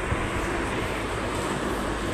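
Steady, even background noise with a low rumble and no speech.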